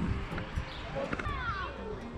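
Brief human laughter about a second in, with short falling voice sounds over a steady low background rumble.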